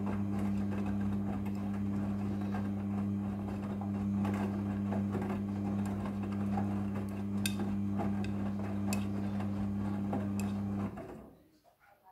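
Midea front-loading washing machine tumbling a load of wet laundry in its wash cycle: a steady motor hum with the clothes churning and occasional light clicks against the steel drum. The drive stops about eleven seconds in and the sound dies away as the drum comes to rest.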